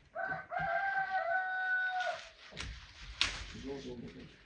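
A rooster crowing: one long call of about two seconds that steps down slightly in pitch before it ends. Two sharp clicks follow near the end.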